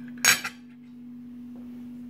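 A single sharp clink of metal cutlery against a ceramic plate about a quarter second in, ringing briefly. A steady low hum runs underneath.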